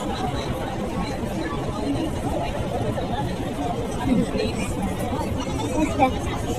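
Indistinct chatter of people talking around the microphone, with no clear words, over a steady low background rumble.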